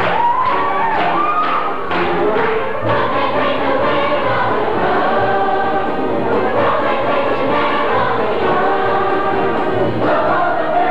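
A large mixed chorus of a stage musical singing an ensemble number together, with musical accompaniment.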